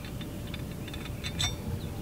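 A few faint clicks and light handling noise as a bare shotgun barrel is turned over in the hands, with a sharper click about one and a half seconds in.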